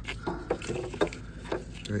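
Light clicks and knocks, about one every half second, from a plastic multi-pin wiring-harness connector and its wires being handled.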